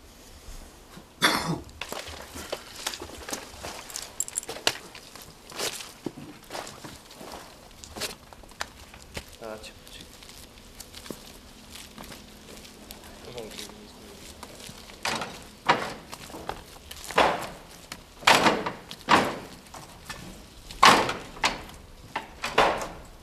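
Footsteps crunching and rustling through brush and undergrowth, in irregular short crunches and knocks that come thicker near the end.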